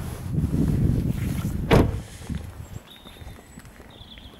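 Rumbling handling noise on the microphone as the camera is carried out of the car, with one sharp knock about two seconds in, then quieter.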